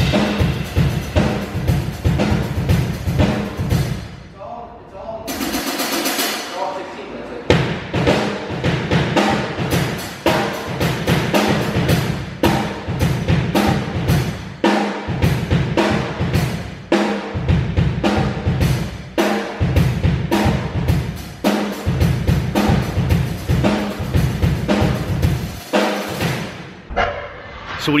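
Acoustic drum kit played in a fast, busy beat of bass drum, snare and cymbals, with rolls. There is a short break about four seconds in, then a couple of seconds of cymbals alone before the full beat comes back.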